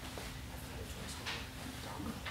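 Quiet room tone: a low steady hum with a couple of faint, brief rustles.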